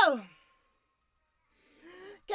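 A high sung vocal note ends by sliding steeply down in pitch, followed by about a second of silence and then a soft breath with a short low vocal sound near the end, just before the singing starts again.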